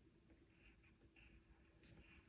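Faint scratching of a colored pencil being drawn across watercolor paper in a few short strokes, outlining the painting.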